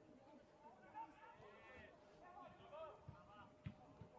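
Near silence, with faint distant voices calling and a couple of faint ticks.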